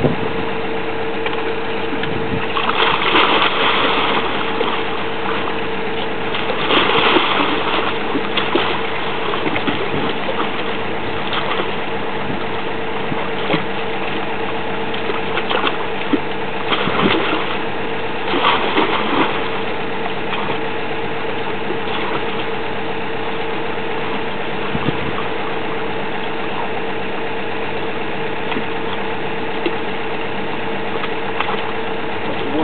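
A geotechnical drilling rig's engine runs steadily with a constant hum. A few louder, noisier surges break in at times.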